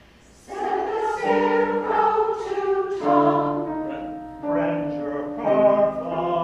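Choir singing a song after a brief pause, coming back in about half a second in with sustained, changing notes.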